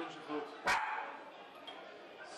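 Street scuffle noise: people shouting, with one short, sharp, loud cry about two-thirds of a second in, then a faint, noisy background.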